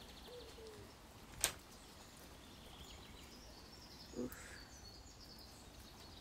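Faint bird ambience: a low dove-like coo at the start and faint high chirps later. A single sharp click about a second and a half in is the loudest sound.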